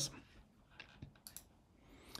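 A few faint computer mouse clicks, single short strokes spaced a fraction of a second apart around the middle.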